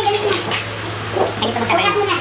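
Indistinct chatter of several people at a shared meal, voices overlapping, over a steady low hum.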